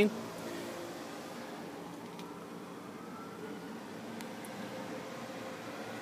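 A faint, steady low hum inside a car's cabin, with no distinct events.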